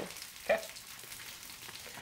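Frozen potatoes frying in a skillet: a steady, quiet sizzle.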